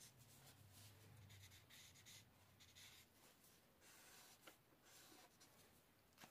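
Faint strokes of an alcohol marker tip rubbing on paper, coming and going irregularly against near-silent room tone.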